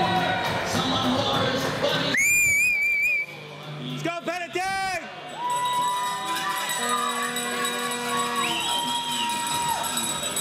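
A referee's pea whistle blown with a warbling trill for about a second, a couple of seconds in, over arena crowd noise. A quick run of rising-and-falling notes follows, then music with long held notes.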